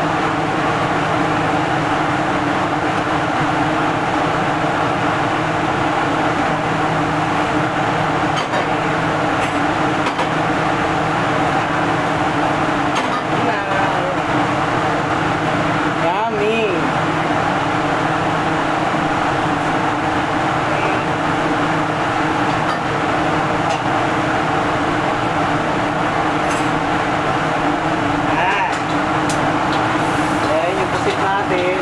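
Steady running noise of a commercial gas wok burner and a kitchen exhaust hood fan, with a constant hum of several steady tones under it.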